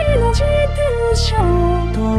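A computer-synthesized female singing voice carries a slow Japanese popular-song melody. The melody steps downward note by note over synthesized strings and a fingered electric bass.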